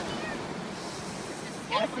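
Ocean surf washing on a beach, a steady rushing noise, with wind on the microphone. A voice speaks briefly near the end.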